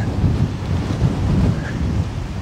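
Strong wind buffeting the camera microphone: a loud, uneven low rush.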